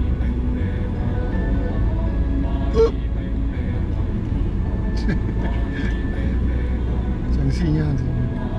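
Steady low road and engine rumble inside a moving Mercedes-Benz car, under music with a voice. A brief sharp click about three seconds in.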